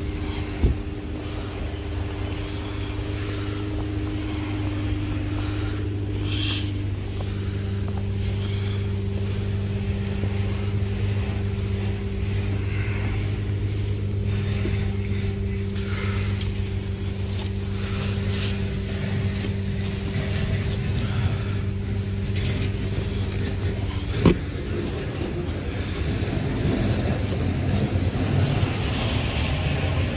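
A Subaru car's engine idling with a steady hum whose pitch shifts about seven seconds in. Two sharp knocks are heard, one near the start and one about 24 seconds in.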